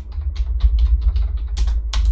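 Typing on a computer keyboard: a quick, uneven run of keystrokes over a steady low hum.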